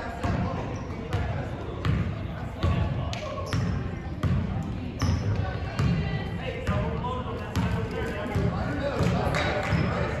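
A basketball dribbled on a hardwood gym floor, its bounces landing about one and a half times a second and echoing in the hall, under spectators' chatter.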